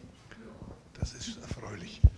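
Faint speech away from the microphones, with a soft click about a second in.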